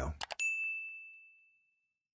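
A few quick mouse clicks, then a single bright bell ding that rings and fades out over about a second: the notification-bell sound effect of a subscribe-button animation.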